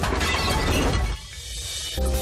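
A crash of flowerpots, a watering can and other garden clutter tumbling off a shelf, with pots breaking, over music. The crash lasts about a second and stops suddenly.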